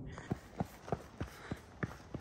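Quick footsteps on a dirt trail, about three steps a second, faint and even.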